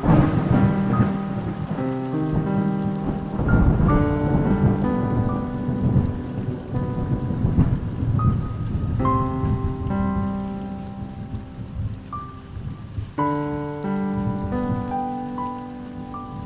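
Slow keyboard music of held, overlapping notes laid over a steady rain sound, with a low thunder-like rumble heaviest in the first half.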